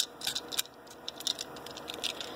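Scattered light clicks and ticks of small 3D-printed plastic parts being handled in the fingers, the sharpest right at the start and a few more about half a second in.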